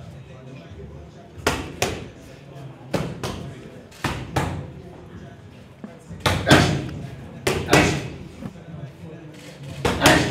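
Boxing gloves smacking into focus mitts in quick combinations of two or three punches, about a dozen strikes in all, each slap echoing briefly in a large gym hall.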